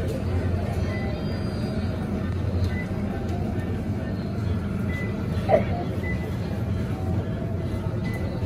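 Shop ambience: a steady low hum with faint indistinct voices and quiet background music, and one brief sharp higher sound about five and a half seconds in.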